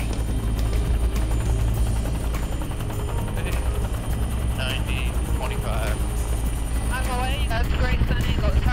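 Helicopter in flight heard from inside its cabin with the side door open: a steady low rotor and engine rumble.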